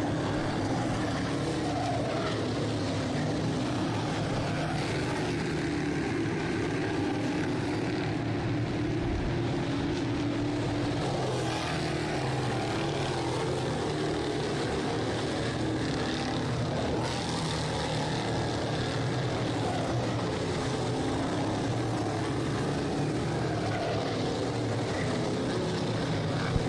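A field of dirt-track Sportsman modified race cars running laps together, their engines merging into one steady, continuous drone.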